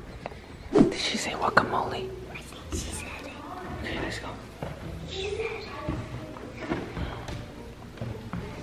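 Background music under whispering voices, with a sudden thump a little under a second in and scattered soft knocks after it.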